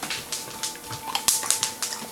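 Dogs' claws clicking and tapping on a hard, smooth floor as several dogs shuffle about, a quick irregular patter of light clicks.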